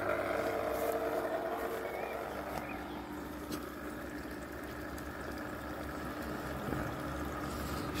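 Intex cartridge filter pump, the pool's recirculation pump, running with a steady electric hum that fades somewhat over the first few seconds.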